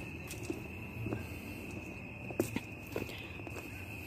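Footsteps over flagstones and dirt: a few soft scuffs and ticks, over a steady high-pitched tone.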